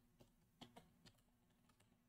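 Near silence with a few faint computer keyboard keystrokes, about four soft clicks in the first second.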